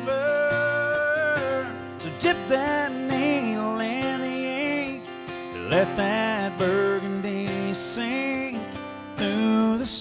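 Country song played live on a strummed acoustic guitar, with a held, sliding melody line over the chords.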